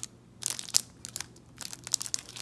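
Clear plastic wrapper on a boxed-up pencil sharpener crinkling in irregular crackles as it is handled and turned over.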